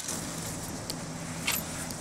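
A few light, sharp clicks and clinks from small hard objects being handled, about one a second with the strongest about three-quarters of the way through, over a steady low hum.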